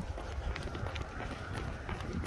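A runner's footfalls on a paved path, picked up by a handheld camera while running, with a steady low rumble of wind and handling on the microphone.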